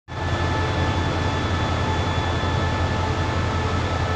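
Diesel locomotive idling at a station platform: a steady low engine hum with a faint, even high whine over it.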